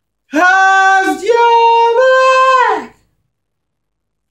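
A man singing a cappella, holding a phrase of a few sustained notes that dips briefly about a second in and then goes higher, ending just before the three-second mark.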